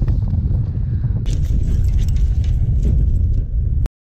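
Heavy, steady low rumble of wind and body movement on a body-worn camera's microphone. From about a second in it is joined by clicks and rattles of gear being handled on a metal deck. The sound cuts off abruptly just before the end.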